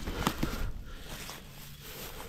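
Faint rustling with a couple of light clicks in the first half second: handling noise as a dead wild turkey's wing feathers are moved over dry grass.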